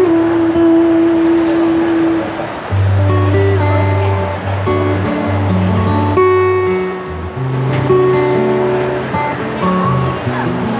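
A song performed live on acoustic guitar with a woman singing, opening with a long held note.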